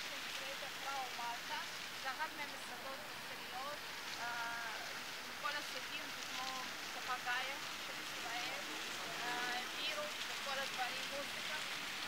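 Plaza fountain jets splashing into their basin, a steady hiss of falling water, with voices talking over it at intervals.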